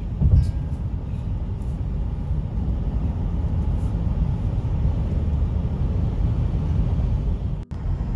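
Steady road and engine rumble heard inside a car cabin at highway speed. The sound drops out briefly just before the end.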